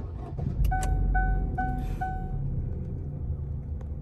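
2018 Chevrolet Sail's 1.5-litre four-cylinder engine cranking and starting on the first try, then running at a raised cold idle. Meanwhile a dashboard warning chime beeps four times, about twice a second.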